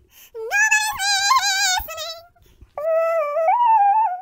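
A woman singing unaccompanied, her voice sped up to a high chipmunk pitch, in two held phrases with vibrato and a short break between them.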